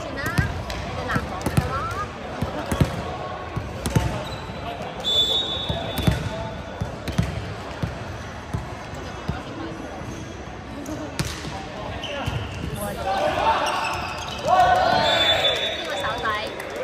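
A volleyball bouncing on a hardwood sports-hall floor and being struck during play, a series of sharp irregular smacks that echo in the large hall. Players shout loudly near the end.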